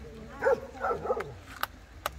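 A dog gives three short, quick barks in the first second or so, followed by a sharp click.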